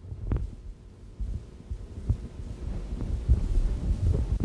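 Irregular low thuds of a man's footsteps and clothing movement, with a few faint clicks.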